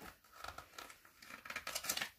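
Pages of a paperback picture book being flipped quickly by hand: a run of paper rustles and flaps that grows louder near the end.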